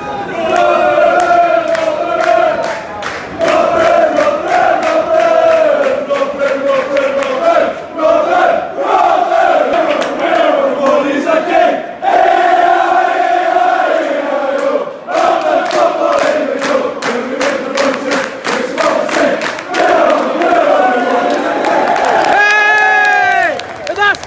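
Football away supporters chanting together in a sustained sung chant, with claps through it. Near the end, a run of shrill glide-like whistling cuts through.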